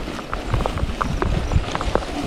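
Mountain bike rolling over bumpy grass: an irregular clatter of clicks and knocks from the frame and drivetrain over a low rumble of tyres and wind.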